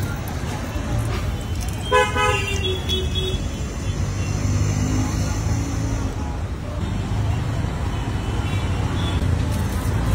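Steady low rumble of street traffic, with a vehicle horn tooting once briefly about two seconds in.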